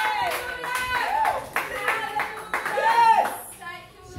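People clapping their hands, with high voices calling out over the claps.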